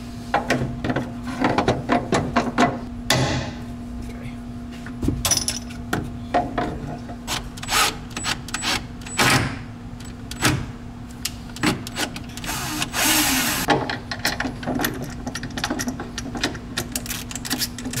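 Hand ratchet and socket clicking in short irregular runs as a bolt is run in and snugged, with light knocks of the tool against metal. A steady low hum runs underneath, and a brief hiss comes about 13 seconds in.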